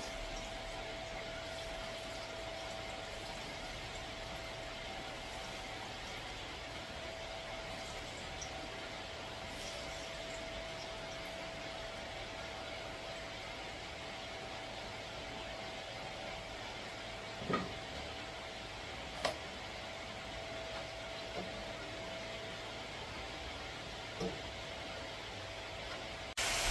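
Breadfruit slices frying in oil in a pan on a gas stove: a steady, quiet sizzle with a faint steady whine under it. There are a couple of sharp clicks a little past the middle.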